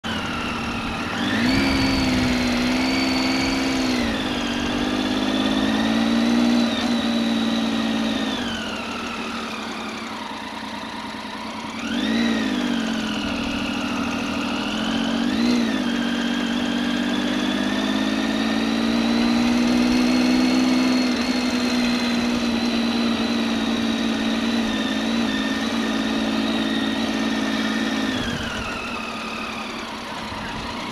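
Motorcycle engine heard from the rider's seat while riding slowly in town traffic, its pitch rising as the bike accelerates about a second in and again near the middle, with a brief blip of the throttle, then dropping back as it slows near the end.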